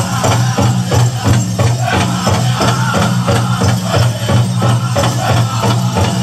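Pow wow drum group singing over a steady, even drumbeat of about three strokes a second, with the jingling of dancers' bells.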